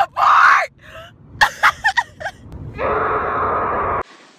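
A young woman's loud groaning cry, followed by several short sharp sounds and about a second of steady rushing noise near the end.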